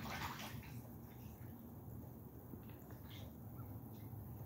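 A brief splash of pond water right at the start, then a few faint small splashes and drips, over a steady low hum.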